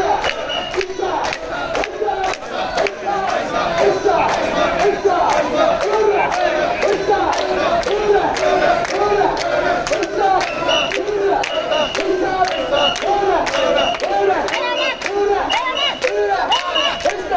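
Mikoshi carriers shouting a rhythmic festival chant in unison as they bear a portable shrine, the shouts coming in a steady beat with sharp clicks mixed in. A short, high, steady tone repeats a few times in the last few seconds.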